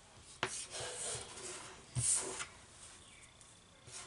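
Rustling, rubbing noise of hands working through long synthetic wig hair, in two bursts: one starting about half a second in and a sharper, louder one about two seconds in.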